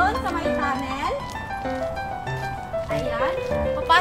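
Background music with held melodic notes, and a voice over it.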